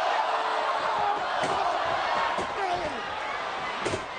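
Arena crowd cheering and yelling, with sharp hits of a brawl in the ring about one and a half seconds in, again about a second later, and near the end.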